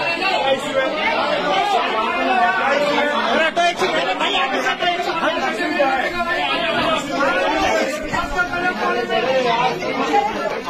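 A crowd of people all talking at once, with many overlapping voices and no single speaker standing out.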